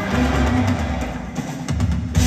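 Live rock band with orchestra playing over a loud sound system, heard from far back in the audience, with a quick run of drum hits near the end leading into the next section.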